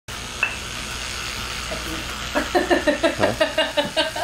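A steady sizzling hiss, then from about halfway a woman laughing in quick repeated bursts over it, ending in an 'okay'.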